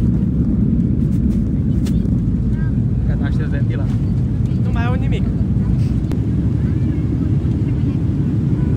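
Steady low rumble of a jet airliner's cabin noise in flight, with faint passenger voices now and then.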